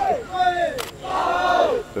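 High-pitched voices calling out a few times, each call falling in pitch, with one sharp click a little under a second in.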